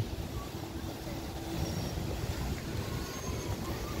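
Steady low rumble of outdoor city background noise, with no distinct events.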